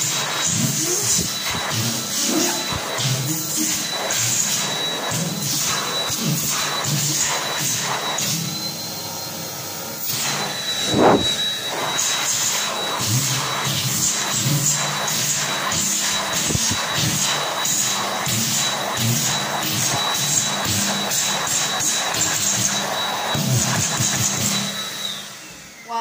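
ATC Cheetah hand dryer running: a steady high motor whine over the rush of air, the air noise shifting as hands move in the airflow, with a brief louder surge about 11 seconds in. The whine winds down and cuts off near the end.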